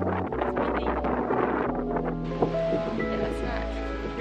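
Background music with held notes and a steady bass line, over wind noise on the microphone.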